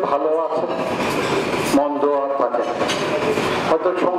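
A man speaking into a podium microphone over a PA, his voice coming in short phrases with stretches of breathy hiss between them.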